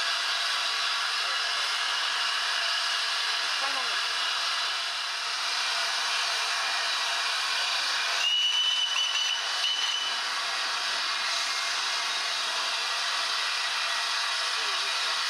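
LNER A3 Pacific steam locomotive Flying Scotsman moving slowly with a steady hiss of escaping steam. About eight seconds in, a high, steady whistle sounds for about two seconds.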